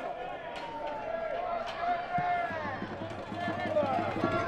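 Players' distant shouts and calls on a football pitch, with a couple of sharp knocks about half a second and nearly two seconds in.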